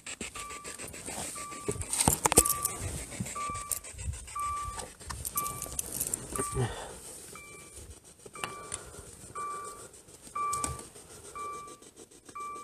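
A steady series of short electronic beeps, one about every two-thirds of a second throughout, with a few knocks and rustles mixed in, loudest about two seconds in.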